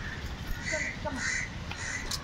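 A crow cawing several times, about half a second apart.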